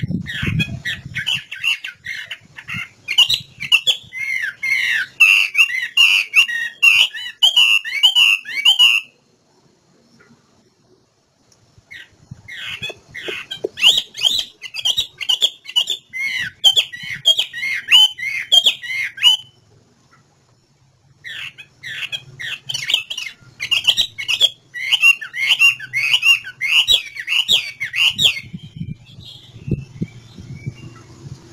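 Chinese hwamei (Garrulax canorus) singing: three long runs of loud, rapid, varied whistled notes, each lasting several seconds, with short pauses between them.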